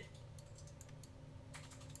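Near silence: a faint low room hum with a few faint, scattered clicks of a computer mouse.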